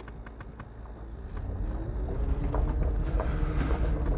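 Electric-converted Mitsubishi L200 pickup with a Nissan Leaf drive motor pulling away in reverse over rough ground. A low drivetrain rumble with creaks and clunks grows louder, a faint whine rises in pitch about two seconds in, and a few light clicks come near the start.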